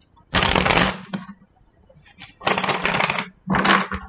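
Tarot cards being shuffled in the hands, in three bursts: one just under a second long near the start, then two more close together in the second half.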